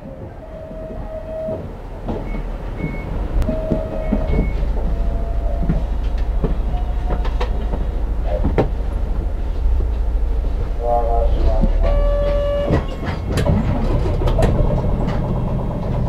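Diesel engine of a city bus idling at a stop, a steady low rumble heard from inside the cabin, fading in over the first few seconds. Scattered clicks and a few brief electronic tones sound over it, a cluster of them about eleven to thirteen seconds in.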